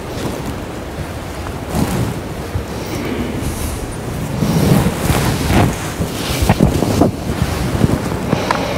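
Loud, irregular rumbling and rustling noise on the microphone, like wind or handling, with several sharp bumps in the second half.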